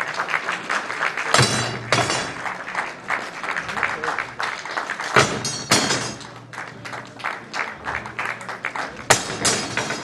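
Crowd shouting and cheering over steel rods being bent and twisted one after another. The loudest sounds are three sharp hits about every four seconds, as each twisted rod is thrown down.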